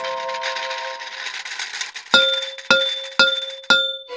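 Cartoon sound effect of four bell-like clangs about half a second apart, each ringing briefly on the same few pitches, after a held musical chord fades out in the first second.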